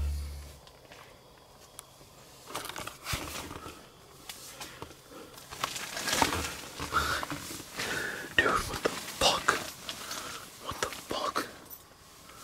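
Two people whispering in short, hushed bursts, starting about two and a half seconds in.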